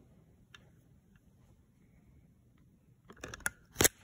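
Handling noise from the recording camera as it is picked up and moved: faint room tone, then a few seconds in a cluster of clicks and knocks ending in one sharp, loud click.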